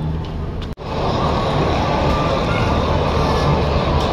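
Loud, steady din of a busy indoor play centre, a dense wash of crowd voices and machine noise. It drops out for an instant under a second in, then comes back fuller.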